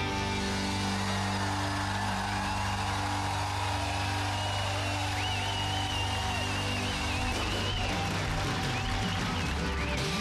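Live band playing an instrumental break of an Austropop song, with sustained bass notes underneath. About halfway through, a high lead melody comes in with a wavering pitch and carries on to the end.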